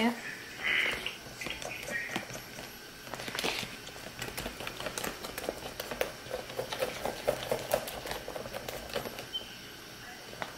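Scattered light clicks and taps of metal spoons and utensils being handled, with low voices underneath.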